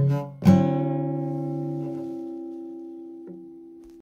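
A guitar chord strummed about half a second in and left to ring, fading slowly, with a light touch on the strings near the end.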